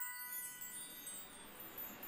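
A magical chime sound effect dying away: several bell-like tones ring on and fade, with a faint high sparkling shimmer that thins out in the first second.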